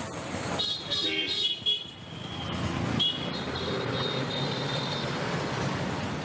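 Busy street traffic: vehicle engines passing with short, high horn toots sounding several times, in the first two seconds and again from about three seconds in.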